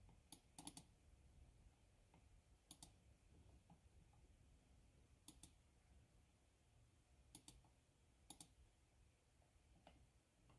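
Faint computer mouse clicks, mostly in quick pairs, spaced a second or a few apart over a quiet room.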